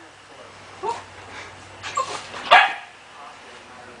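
A dog giving a few short barks, the loudest and sharpest about two and a half seconds in.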